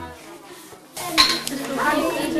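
Classroom ambience of children's voices with light metallic clinks of scissors and craft tools, growing louder about a second in.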